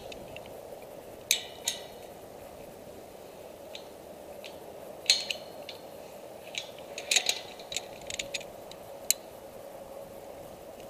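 Metal carabiners and snap hooks on a climbing harness clinking and scraping while rope and lanyards are rigged: a dozen or so sharp clinks at irregular intervals, over a steady low hum.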